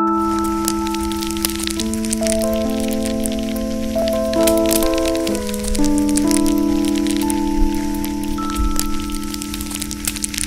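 Slow, sustained keyboard chords changing every second or two, over the dense crackle and scattered sharp pops of a campfire sound effect.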